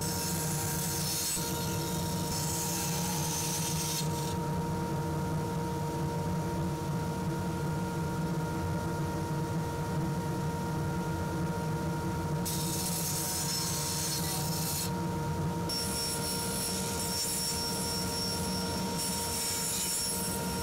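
Bandsaw running with a steady hum while its blade cuts through rotten spalted maple. The hiss of cutting starts and stops several times.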